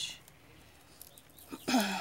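Speech only: a woman speaking Portuguese, with a pause of about a second and a half between phrases before her voice returns near the end.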